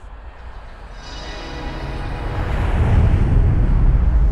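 A deep rumbling whoosh that swells steadily and peaks near the end, like something big passing by: a transition sound effect over a scene cut.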